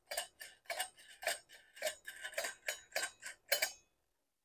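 A metal nut being turned by hand down a threaded steel rod set in a metal pan: light, irregular metallic ticks, about three a second, that stop just before the end.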